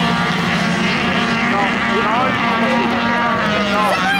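A pack of dirt-track race cars running together in a steady engine drone as they race around the course, with voices over it.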